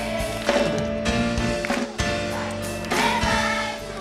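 Children's choir singing together over amplified instrumental accompaniment with a beat.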